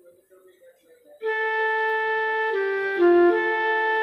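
Casio electronic keyboard playing a slow melody with a flute-like woodwind voice: held notes that start about a second in and step to new pitches every half second or so.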